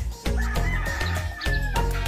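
A rooster crowing once, a single long crow held for over a second that drops off near the end, heard over background music with a steady beat.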